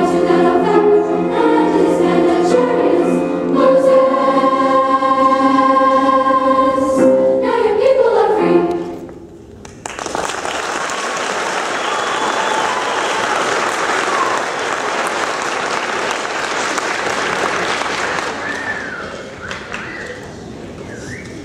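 A girls' choir singing, holding a final chord that ends about eight and a half seconds in. After a moment's pause the audience applauds, and the applause dies down near the end.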